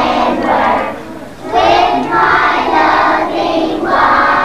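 A group of young children singing loudly together in unison, in held phrases, with a short break about a second in before the next phrase.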